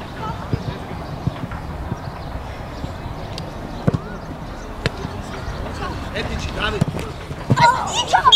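Football being kicked on a grass pitch: several sharp thuds, the loudest about four seconds in, over distant shouting from players and coaches. Near the end, a burst of loud children's shouting.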